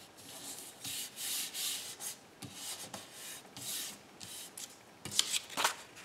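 Hands rubbing and smoothing a freshly glued strip of paper down onto a card, a run of several swishing strokes, then sharper paper crackling just after five seconds as a thin sheet is handled.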